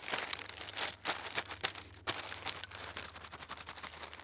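Plastic Parcel Post mail satchel being torn open by hand: irregular crinkling and ripping with a string of sharp crackles.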